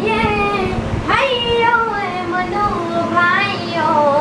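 A young girl singing solo, holding long notes that slide up and down in pitch.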